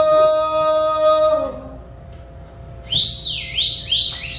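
A man's final long sung note, held steady and fading out about a second and a half in. From about three seconds a loud, high whistle repeatedly slides up and down in pitch: a listener's whistle of approval as the song ends.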